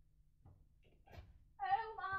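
A woman's high, drawn-out vocal call about one and a half seconds in, a held note running into a second, falling one, after a few light knocks.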